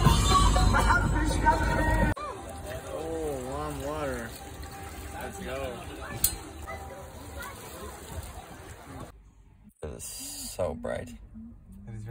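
Music that stops abruptly about two seconds in, followed by voices and water poured from a copper ewer over hands into a copper basin.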